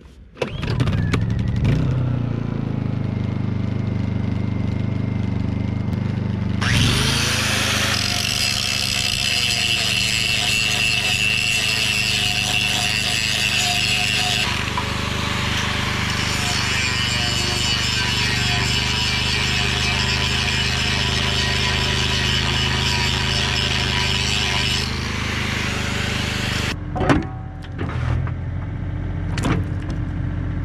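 Honda portable generator started and running steadily, then an angle grinder switched on about seven seconds in, grinding steel with a wavering whine as it loads, to take down the shiny high spots where the quick-change coupler binds on the bucket. The grinding stops near the end, followed by a few metal knocks.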